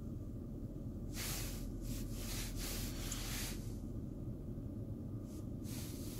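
A steady low hum inside a car cabin, with several soft breathy hisses on top: a person breathing close to the microphone.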